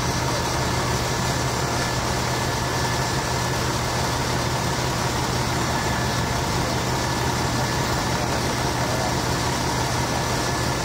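A motor vehicle engine idling steadily, a constant low drone over an even hiss.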